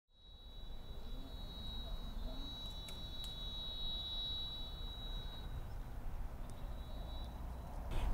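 Faint ambient background: a low rumble under a thin, steady high-pitched whine that stops about seven seconds in, with a couple of brief clicks near three seconds.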